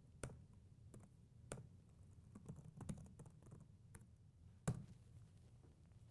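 Faint, scattered keystrokes on a computer keyboard as a short terminal command is typed and entered, with a small flurry of keys in the middle and a sharper keystroke a little before the end.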